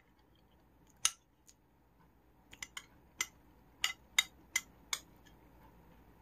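Metal spoon clicking and scraping against a bowl while eating: about nine short, sharp clicks, one about a second in and the rest bunched in the middle.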